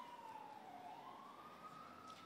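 Faint emergency-vehicle siren wailing, its pitch sliding down and then rising again in one slow sweep.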